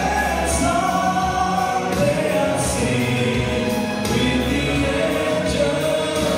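Male vocal ensemble singing a gospel hymn in close harmony through microphones, moving through long held chords.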